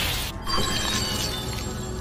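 Anime sound effects over background music, for damage magically transferred onto a character. A loud wash of noise dies away just after the start, then a glassy, tinkling shimmer comes in about half a second in and fades.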